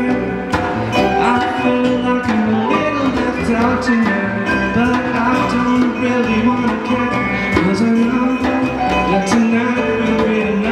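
Live band playing a song with two electric guitars, piano and a djembe hand drum, with a man singing.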